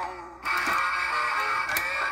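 A custom song with guitar plays from the Singing Bony Soul animatronic fish's built-in speaker, with little bass. The music dips almost out at the start and comes back in full about half a second in.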